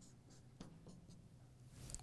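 Faint scratching of a marker drawing short strokes on flip-chart paper, several quick strokes in a row.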